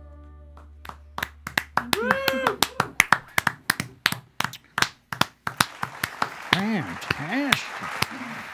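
A held final chord of the band fades out, and about a second in a small group starts clapping by hand. Scattered separate claps go on with a few rising-and-falling cheers and whoops.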